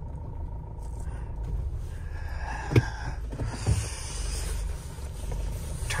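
Low, steady engine and road rumble heard inside a Mahindra Thar's cabin as it drives off slowly. A sharp click comes about halfway through, followed by a couple of soft thumps.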